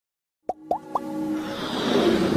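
Logo-intro music and sound effects: three quick upward-gliding pops starting about half a second in, then a swell that rises steadily in loudness.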